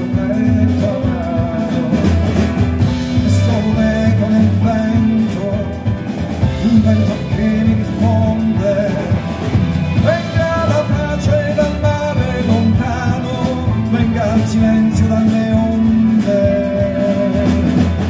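A jazz quartet and orchestra playing live: piano, double bass and drums under a melody line that moves and glides around the middle register.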